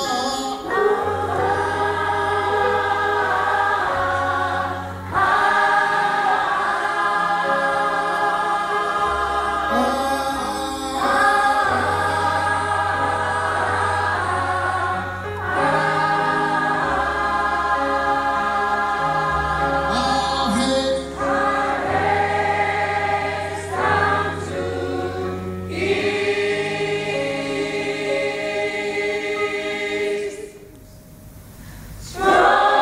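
Gospel choir singing a repeated phrase in several parts over sustained low bass notes that change every few seconds. The singing stops right at the end.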